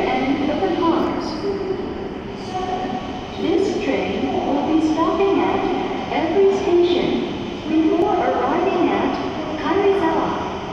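A public-address voice talking on a Shinkansen station platform, over the steady running noise of a W7-series Shinkansen train pulling in.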